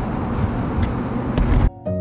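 Outdoor rumbling noise from the microphone, from wind buffeting and camera handling, which cuts off abruptly near the end into soft instrumental background music with held notes.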